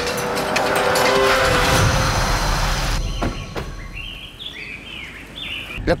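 A police SUV driving up close, its engine and tyre noise building for about three seconds and then cutting off suddenly. After that, birds chirping, with a couple of light knocks.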